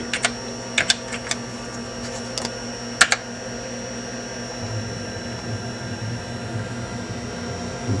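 A few keystrokes on a Compaq Portable computer's keyboard typing a DOS command, the loudest about three seconds in, over the computer's steady fan hum with a thin high whine.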